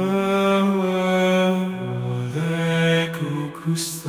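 AI-generated singing voice holding long, drawn-out notes in a slow, chant-like melody, stepping down in pitch about two seconds in. The line breaks up after three seconds and ends with a short hiss just before the end.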